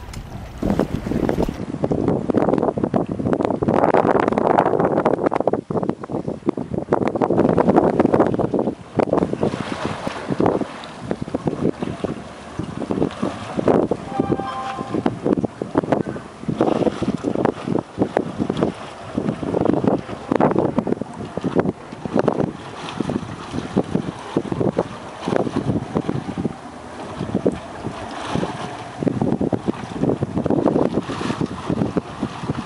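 Gusty wind buffeting the microphone, heaviest in the first several seconds, over the running of the 1991 Skipjack 26's Volvo Penta 5.7 V8 as it backs stern-first into a slip, its propeller churning the water astern.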